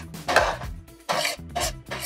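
Metal serving spoon scraping and tapping across a metal sheet pan in a few short strokes as roasted cauliflower is tossed, with faint background music.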